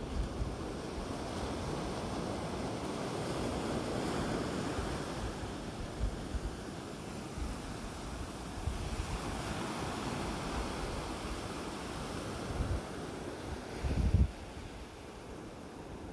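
Ocean waves breaking on a beach: a wash of surf that swells and eases, with wind buffeting the microphone in low rumbles and one loud buffet near the end.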